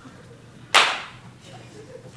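A single harsh, sudden vocal screech, a performer's mouth-made imitation of a blue jay's cry, about three quarters of a second in, fading within half a second.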